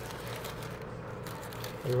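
Soft crinkling and rustling of a burrito's double wrapping, yellow paper over aluminium foil, as hands peel it open.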